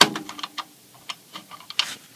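Fuse holder on a Pyrotronics System 3 fire alarm control panel being worked loose by hand: a sharp click at the start, then a string of small clicks and ticks, with a louder click near the end.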